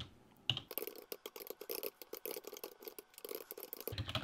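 Computer keyboard typing: a quick, uneven run of keystrokes that starts about half a second in.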